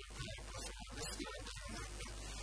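A man talking into a microphone. The recording is distorted and choppy, with the voice cutting in and out every fraction of a second.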